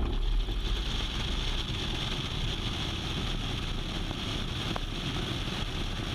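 Citabria light plane's piston engine and propeller running steadily under power, with wind rushing over an outside-mounted camera, as the plane rolls down the runway at the start of its takeoff.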